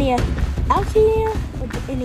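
A person's voice making wordless sounds, with a short held note about a second in, over low rumbling noise.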